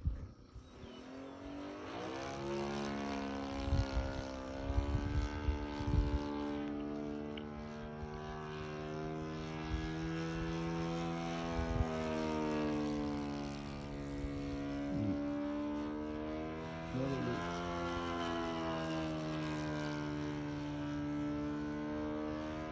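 A Saito 125a single-cylinder four-stroke glow engine swinging a 16x6 APC propeller on an RC Christen Eagle II biplane in flight. The engine note fades in about two seconds in and then slowly rises and falls in pitch as the plane passes and manoeuvres. A few low thumps come a few seconds in.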